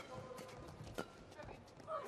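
Scattered sharp taps and knocks on a badminton court between rallies, each with a short echo from the large hall, with faint voices.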